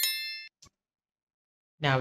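Bell-like ding sound effect from an animated subscribe-button overlay as its bell icon is clicked, ringing bright and fading out over about half a second, followed by one short faint click.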